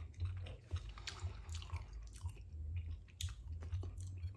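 A person chewing a mouthful of soft stewed carrot with the mouth closed, making small, irregular wet clicks and squelches.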